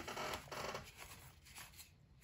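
Trading cards sliding and rubbing against one another as a stack is handled: a few faint scratchy strokes that die away toward the end.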